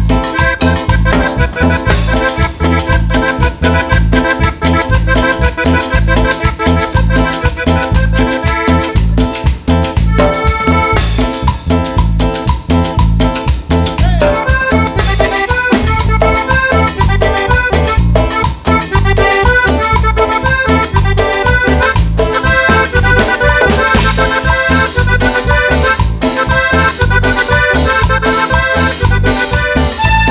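Live tropical band playing an instrumental passage with a steady dance beat. A button accordion carries the melody over electric bass, electric guitar, keyboards and drums.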